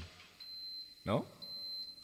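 A steady, high-pitched electronic beep tone, held from about half a second in with a brief break, as a sound effect in the spoken intro of a K-pop track. A short spoken "No?" falls in the middle.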